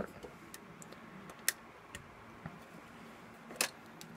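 A few light clicks and taps from a car stereo's sheet-metal chassis and plastic parts being handled during disassembly, the sharpest about a second and a half in and another near the end.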